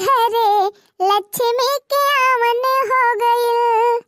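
A high-pitched female voice singing a folk badhai geet, a song of blessing for a daughter's birth and birthday, in long held notes with a wavering vibrato. The singing breaks off briefly for breath just before one second in and again near two seconds.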